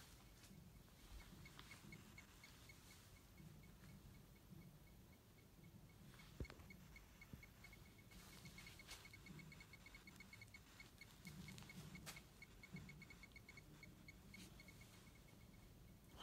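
Near silence: room tone with a faint, rapid, high-pitched ticking that comes and goes, and a single sharp click about six seconds in.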